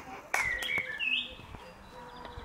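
Bird chirping: a few short, high notes about half a second to a second in, with a light knock just before them.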